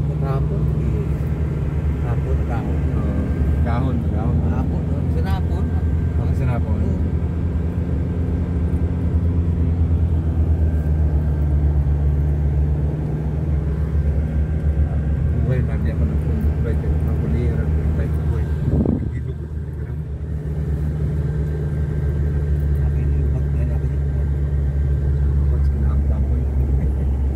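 Car engine and road noise heard from inside the moving car's cabin, a steady low drone that dips briefly about three-quarters of the way through and then picks up again.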